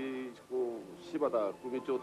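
A man speaking in Japanese: a drawn-out vowel at the start, then quick speech.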